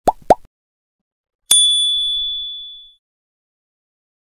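Subscribe-button animation sound effects: two quick rising pops at the start, then about a second and a half in a single bright bell ding that rings on and fades away over about a second and a half.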